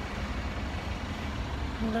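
Steady low rumble of outdoor background noise, such as passing traffic, picked up by a handheld phone. A woman's voice begins near the end.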